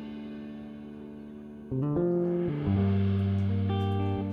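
Instrumental band music: a held keyboard chord fades, then a little under two seconds in, a semi-hollow electric guitar and the bass come in playing a phrase of single notes, with a deep bass note sustained under it.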